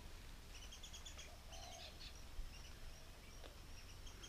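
Faint birds calling: two short runs of quick high chirps about half a second and a second and a half in, and a fainter one near the end.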